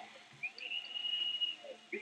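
Tournament arena ambience: distant shouting voices and a high, steady whistle-like tone held for about a second.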